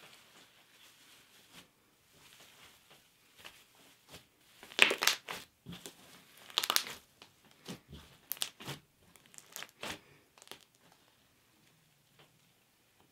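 Clear slime packed with silver foil flakes being kneaded and squeezed by hand, the flakes crinkling in irregular bursts. It is faint at first, loudest about five and seven seconds in, and dies away near the end.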